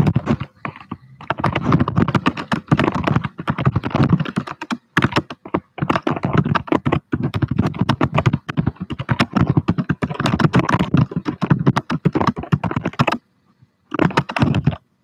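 Fast typing on a computer keyboard, in long runs of rapid key clicks broken by brief pauses, stopping about a second before the end.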